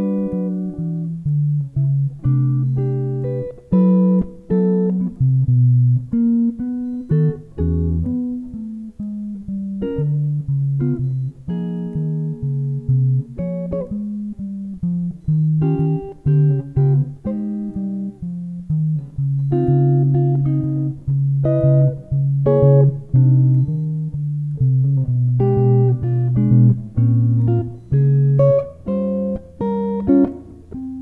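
Solo jazz guitar on an archtop electric guitar, played chord-melody style: plucked chords and melody notes over a walking bass line of steady low notes.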